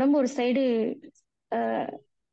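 Speech only: a person talking in two short phrases with a brief pause between them.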